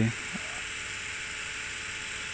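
Powered surgical drill running at a steady speed with a high-pitched whir, drilling eccentrically through the oblong hole of a distal clavicle plate into the clavicle to set up compression at the fracture.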